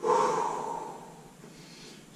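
A man's long, audible exhale, strongest at the start and fading away over about a second and a half. It is a controlled breath out timed to the effort of lifting the top leg in a side-lying Pilates leg lift.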